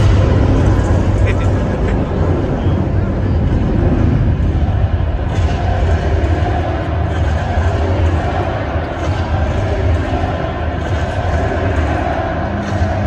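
Arena PA system playing the soundtrack of a pregame intro video, loud and continuous with a heavy, steady bass, heard in a large indoor arena.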